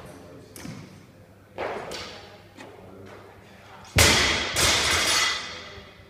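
A knock, then two heavy thuds about half a second apart with a ringing rattle and a hall echo, typical of a loaded barbell dropped onto the rubber gym floor.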